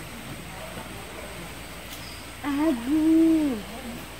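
A child's voice making a short hummed sound about halfway through: a brief wavering start, then one held note of about a second that drops away at the end.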